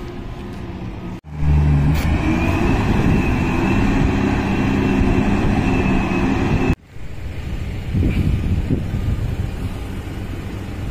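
A heavy engine running steadily, with a high steady whine over it. It starts abruptly about a second in and cuts off suddenly near seven seconds. A lower steady rumble is heard before and after.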